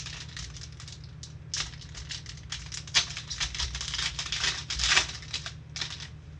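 Shiny plastic trading-card pack wrapper being torn open and crinkled by gloved hands, a dense run of crackles that peaks about three seconds in and again near five seconds.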